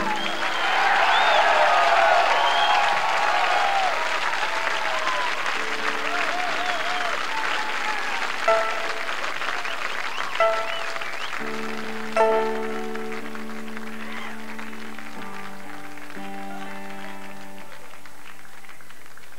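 Audience applauding, cheering and whistling as a song ends, the applause fading over several seconds. Loose amplified guitar notes come in under it: three sharp plucked notes and then held chords ringing on.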